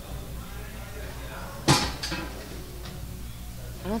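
A single sharp clack of pool balls striking, about halfway through, over the low hum and murmur of a pool hall.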